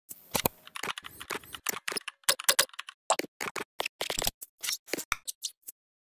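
Computer keyboard typing sound effect: a run of quick, irregular key clicks, about four a second, stopping shortly before the end.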